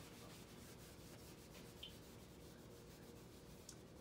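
Faint rubbing of a handheld whiteboard eraser wiping marker writing off a whiteboard, in repeated strokes.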